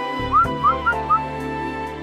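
Four short rising whistle chirps, about a quarter-second apart, over held notes of cartoon background music.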